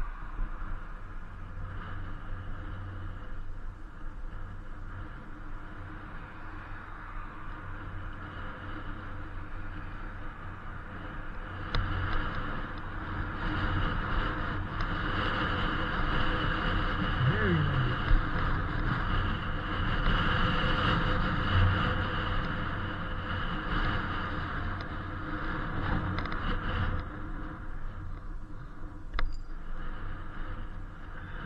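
Riding noise from an Inmotion V8 electric unicycle on a paved street: wind rushing on the microphone over a steady hum, growing louder about twelve seconds in.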